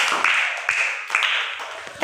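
A group of children clapping their hands together, a dense patter of claps that fades out near the end.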